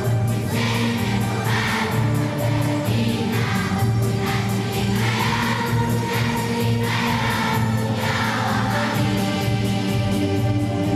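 A large children's choir singing together in a concert hall, with long held notes.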